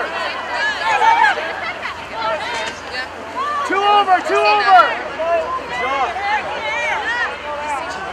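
Women's voices shouting short, indistinct calls, several overlapping at times, over steady outdoor background noise: rugby players calling to teammates during play.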